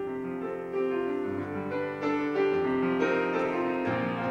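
Piano accompaniment playing held chords in an instrumental passage of a song, with no singing.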